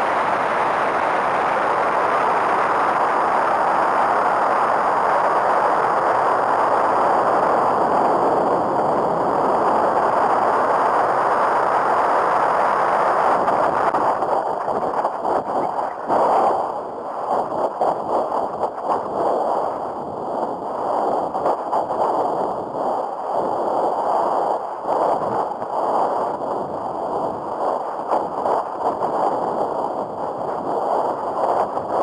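Air rushing loudly over an onboard rocket camera's microphone as the rocket flies. The noise is steady at first, then from about halfway through turns to choppy, fluttering wind buffeting as the rocket swings about.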